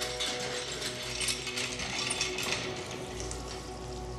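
Rusty cast-iron hand pump being worked by its lever handle, the metal linkage clanking and creaking in a run of irregular clicks.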